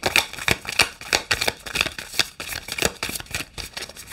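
A deck of oracle cards being shuffled by hand, with a quick, irregular run of card slaps and flicks.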